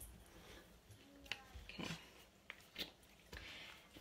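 Faint handling sounds of a glue stick being rubbed over the back of a paper card, with a few light clicks and a short soft scrubbing near the end.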